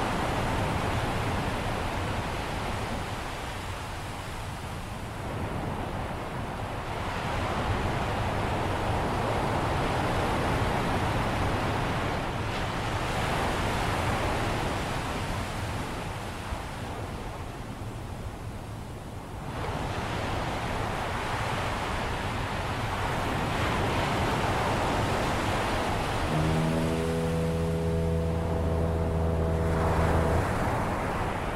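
Ocean surf washing steadily, swelling and easing over several seconds at a time. About four seconds before the end, a foghorn sounds one long, low, steady blast.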